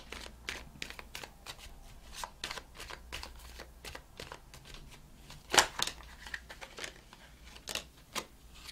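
A deck of tarot cards being shuffled by hand: a run of soft card clicks and rustles, with a louder snap of the cards a little past halfway and another near the end.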